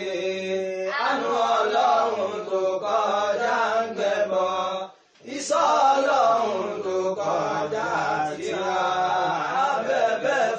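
Chanted vocal song with sung words and no clear instruments. It cuts out briefly about five seconds in and then resumes.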